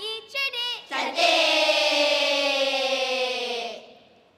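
Children's choir singing together: a short phrase, then from about a second in one long held note that sinks slightly in pitch and fades out near the end.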